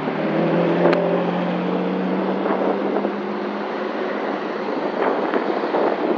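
A Ferrari Enzo's V12 engine passing at low speed, a steady engine note that dies away after about three and a half seconds into street traffic noise. A sharp click comes about a second in.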